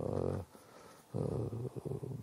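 A man's low, drawn-out voice with no clear words, broken by a pause of about half a second.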